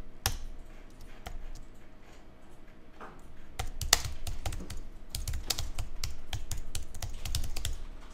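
Computer keyboard typing: a few scattered clicks, then from about halfway through a quick run of keystrokes as a short line of text is typed.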